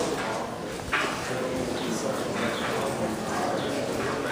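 Indistinct talk of several people in the background, with no clear words.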